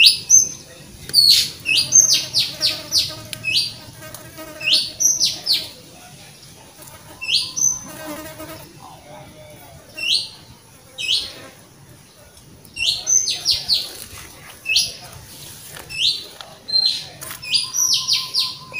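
A bird chirping over and over: short, high chirps that each drop quickly in pitch, given in quick runs of two to five with brief pauses between the runs.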